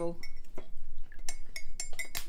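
A metal teaspoon clinking repeatedly against the inside of a ceramic mug of tea as it is stirred, a quick run of short, sharp chinks.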